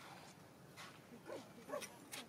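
A baby macaque giving two short, high, whimpering squeaks in the second half, the second louder.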